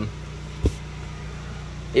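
Steady low hum of a Mitsubishi Pajero Sport Dakar idling, with one short knock about two-thirds of a second in.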